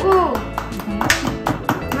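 Background music with a quick, even beat of sharp taps.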